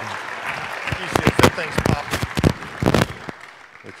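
Scattered hand claps from the congregation, irregular and fading out after about three seconds.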